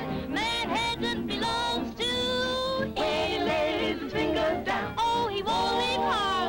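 Swing dance band playing with singing on an old film soundtrack, the voice holding long notes and gliding between them.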